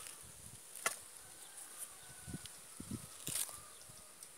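Faint, steady high-pitched drone of insects, with a few sharp clicks about a second in and just past three seconds.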